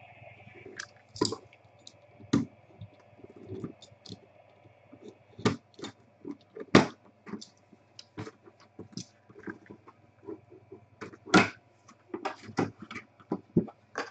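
Cardboard box being handled and opened by hand: irregular taps, knocks and scrapes of cardboard and packaging, a few of them sharp and loud, over a faint steady hum.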